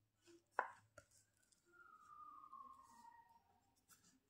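Near silence with a few faint taps of a ballpoint pen on a textbook page as letters are written into a crossword. The sharpest tap comes about half a second in.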